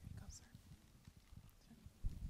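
Near silence: room tone with a few faint, irregular low knocks and taps.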